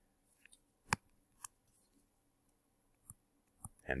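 Faint, scattered clicks and light scratches of a stylus writing on a tablet screen, with a sharper click about a second in.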